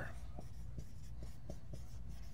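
Marker writing on a whiteboard: faint short strokes and taps, about six in two seconds, over a steady low room hum.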